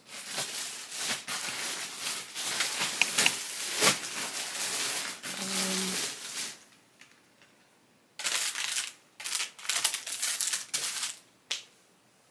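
Plastic shopping bag rustling and crinkling as hands rummage through it: about six seconds of continuous rustling, a quiet pause of over a second, then several short bursts of crinkling.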